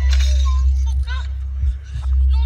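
Steady low rumble of a car's cabin, with a short crackling burst at the start and brief high, gliding voice-like sounds over it, mixed with music.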